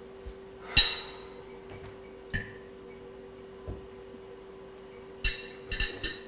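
Tableware clinking at a meal table: a few sharp, ringing clinks of cutlery, plates or glasses. The loudest comes about a second in, another follows a little later, and two more come close together near the end.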